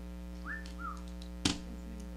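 A person whistling two short notes, the first rising and holding, the second lower and falling away, like a wolf whistle. About a second later comes a single sharp tap, as a hand presses a picture against a poster board.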